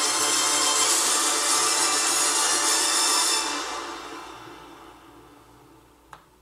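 Film trailer music: a loud, full swell that holds for about three seconds, then fades out over the last two to three seconds.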